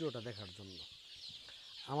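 A shed full of young deshi chickens peeping and chirping together in a steady chorus, with the tail of a man's speech in the first second.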